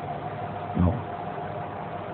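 A pause in a man's speech, filled by steady background hum, with one short spoken word a little under a second in.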